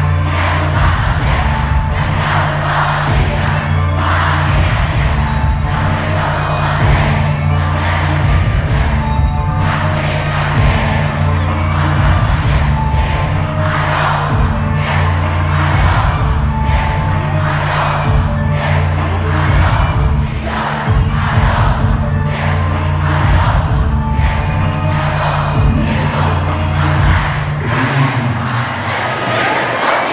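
Live hip-hop concert in a club: a loud, bass-heavy backing track with a steady beat, and a large crowd shouting and cheering along.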